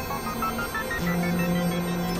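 Layered experimental electronic music: a quick run of short, ringing synth-like notes stepping upward in pitch, over sustained droning tones, with a low drone coming in about a second in.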